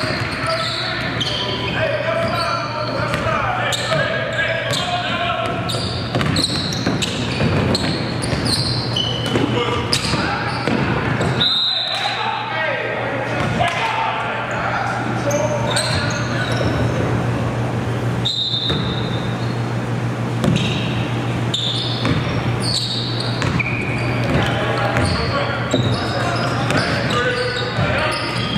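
A basketball game in a gym: a ball bouncing repeatedly on a hardwood court, with short high sneaker squeaks and indistinct shouts from players and onlookers echoing in the hall, over a steady low hum.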